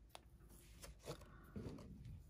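Near silence with a few faint ticks and soft rustles of twine and a paper tag being handled and drawn around a paper card box.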